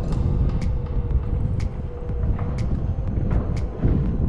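Onewheel GT riding along pavement: wind buffeting the microphone and the tyre rumbling over the path, under a steady whine from the electric hub motor that shifts slightly in pitch as the speed changes.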